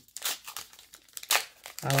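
Star Wars Unlimited booster pack's foil wrapper crinkling as it is torn open, in a few short rustles, the loudest about a second and a half in.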